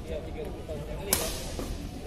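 A badminton racket striking a shuttlecock once, a sharp crack about a second in, over background chatter.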